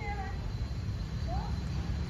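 A few short, thin animal calls over a steady low rumble: one right at the start, and a short rising call about a second and a half in.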